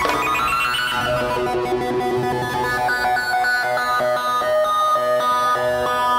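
Electronic stage keyboard playing alone, starting with a quick upward run and then holding a series of changing chords, without drums.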